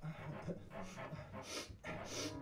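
Panting and breathy gasps from a voice performer improvising, in a few short bursts, the loudest about one and a half seconds in.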